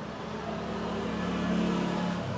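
A motor vehicle's engine hum that swells steadily and is loudest near the end, as a vehicle going by.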